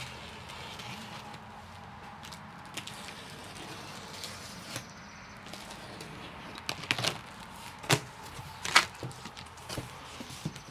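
Packing tape on a large cardboard box being slit open with a blade, then the box flaps pulled apart. There are three sharp cardboard noises in the second half.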